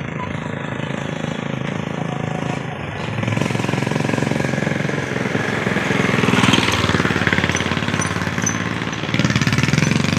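A small engine running with a fast, even pulsing beat, getting louder about three seconds in and again around six seconds.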